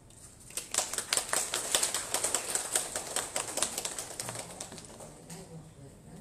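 Small seated audience applauding by hand, a dense patter of claps that starts about half a second in, is loudest for the next few seconds and dies away near the end.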